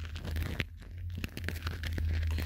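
A smartphone being handled and tapped, giving faint scattered clicks and rustling over a steady low hum.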